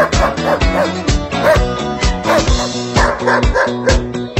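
Dance music with a steady drum beat, with German Shepherd dogs barking over it.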